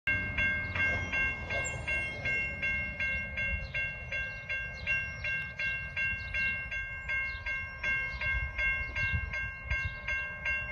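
Railroad grade crossing bell ringing at a steady rhythm of a little under three strikes a second, the warning for an approaching train, over a low rumble.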